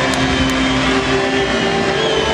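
Crowd noise in a swimming stadium with music over the public address, a few sustained notes held above the din.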